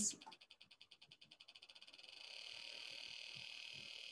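Breadboard voltage-controlled oscillator played through a small speaker: a train of clicks that speeds up steadily and, about halfway through, merges into a steady high buzz as the oscillator reaches its highest frequency.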